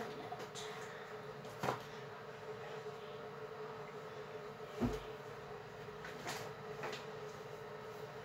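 A few soft knocks and handling sounds, the strongest a low thump about five seconds in, over a faint steady hum.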